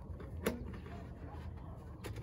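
A single sharp knock as a long white plastic pipe is worked into a plastic elbow fitting, about a quarter of the way in, over a faint low rumble.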